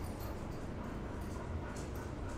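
A dog whimpering faintly.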